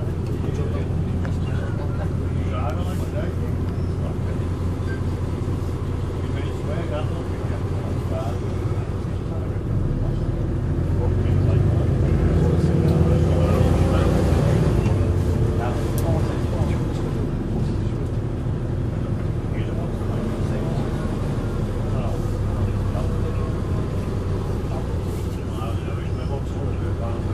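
The Cummins diesel engine of a Volvo Olympian double-decker bus, heard from the upper deck as the bus moves, running with a steady low drone. From about ten seconds in it grows louder for several seconds with a rising whine as the bus pulls harder, then drops back to a steady drone.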